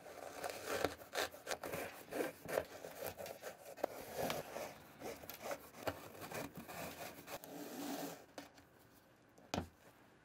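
A flat shoelace being pulled out through the eyelets of a white Nike sneaker: a run of short, uneven drags of the lace against the eyelets and the shoe's upper. It stops a little after eight seconds in, and one single knock follows near the end.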